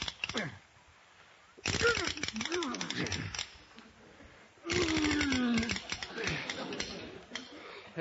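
Radio sound effect of a house being jacked up: three bursts of rasping, ratcheting creaks about two seconds apart, the last sliding down in pitch.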